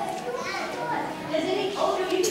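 Young children's voices chattering and calling out in a large hall.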